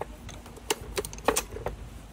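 Telescoping handle of a folding hand truck being pulled out: a run of sharp clicks and rattles as it slides through its lock settings, with about four louder clicks in the second half.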